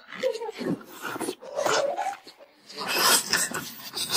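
A man chewing a mouthful of salted duck egg, with wet mouth sounds and a few short closed-mouth hums.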